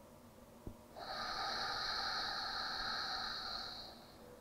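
One slow, steady exhale through the nose, a hissing breath that starts about a second in and lasts about three seconds: the exhale phase of box breathing (sama vritti pranayama).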